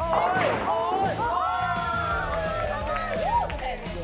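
A bowling ball crashing into the pins just after the start, a short clatter, followed by players whooping and cheering excitedly over background music.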